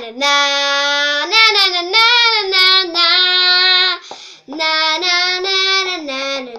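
A girl singing unaccompanied, holding long notes on 'na' syllables in a song's refrain, with a quick breath about four seconds in.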